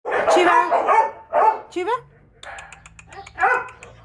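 A dog barking several times in quick succession at the start, then light rapid ticking and one more bark near the end.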